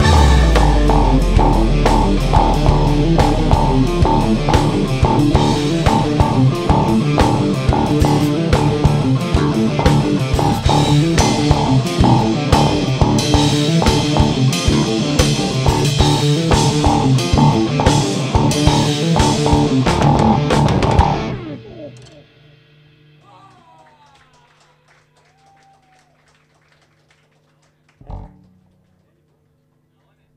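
Live rock band playing loud: electric guitar, bass guitar, keyboard and drum kit with steady, dense drum hits. The song stops about two-thirds of the way through and rings out into a faint steady hum, and a single short thump comes near the end.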